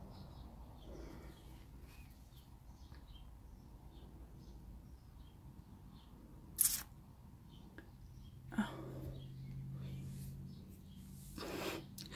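Quiet room with faint scattered high chirps and one sharp click about two-thirds of the way in; a short exclaimed 'Oh' later on.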